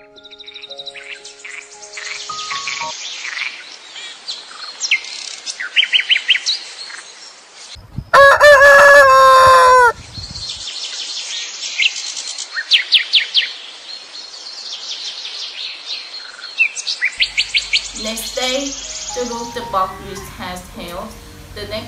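Small birds chirping and trilling in quick runs of high notes, with a rooster crowing once, loud and about two seconds long, near the middle.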